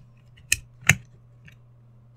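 Two sharp plastic-and-metal clicks about half a second and a second in, with a fainter one later, as 18650 batteries are taken out of a Wismec Sinuous V200 box mod's battery sled. A faint steady low hum lies underneath.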